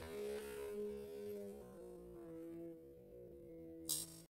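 Faint electronic background music with long held notes that step down in pitch about two seconds in, over a steady hum. A short burst of noise comes near the end.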